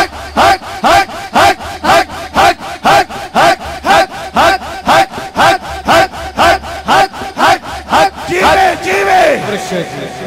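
Men chanting zikr in unison over microphones, short rhythmic shouted syllables about two a second, with the crowd joining in. Near the end the chant breaks into longer, drawn-out called phrases.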